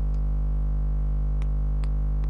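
Steady electrical mains hum with a dense stack of overtones, unchanging throughout, with a couple of faint clicks about a second and a half in.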